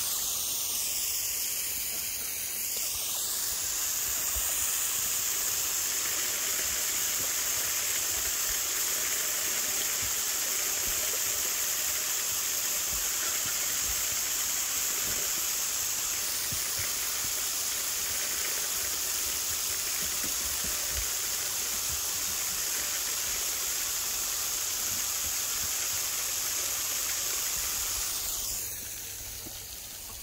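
Garden hose nozzle spraying a steady jet of water onto grass: a continuous hiss that stops about a second and a half before the end.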